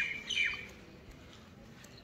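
A bird calling twice in quick succession, each short call falling in pitch, within the first half second; after that only faint background sound.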